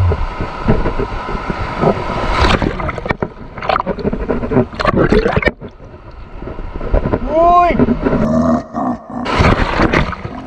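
Choppy sea water splashing and washing over a camera mounted low on a kayak, in uneven surges.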